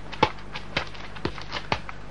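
Footsteps walking away, four even steps about two a second.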